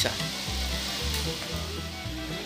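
2017 Toyota Rush engine idling with its battery disconnected, heard as a steady hiss. After the jump start it keeps running on the alternator alone. Faint background music with a bass line runs underneath.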